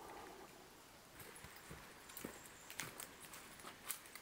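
Quiet woodland ambience with a few faint, scattered taps and clicks of footsteps on leaf litter and rock.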